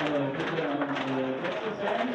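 Indistinct voices of several people talking over a steady background hubbub of crowd noise.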